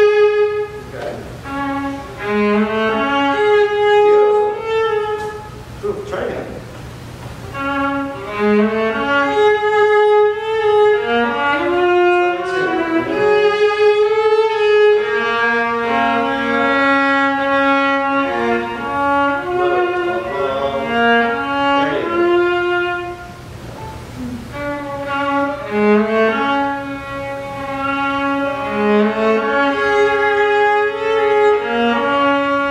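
Two violas playing a passage together in long held notes at a slow practice tempo.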